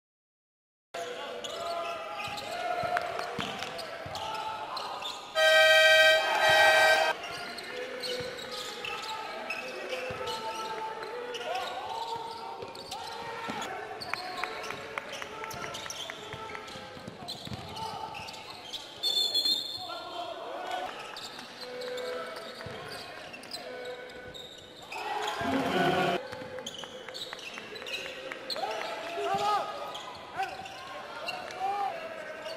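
Basketball game on an indoor hardwood court: the ball dribbling and bouncing amid players' and crowd voices in a large hall. About five seconds in, a loud buzzer horn sounds for nearly two seconds, and there is a brief high tone later on.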